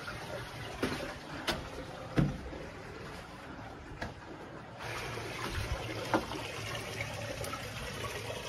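Water trickling steadily inside a sandstone cave, with a few soft knocks along the way.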